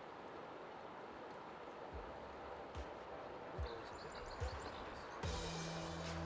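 A faint, quiet outdoor hush with a few soft low thuds and a brief patch of faint high chirps. About five seconds in, background music with low sustained notes begins.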